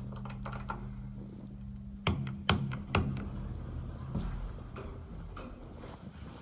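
2004 Otis elevator car: light clicks as a floor button is pressed over a steady low hum. The hum stops about two seconds in, and three sharp knocks follow within a second.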